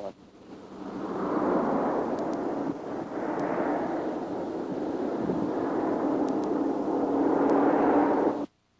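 Steady rushing noise with a faint low hum, swelling in over the first second and then holding steady.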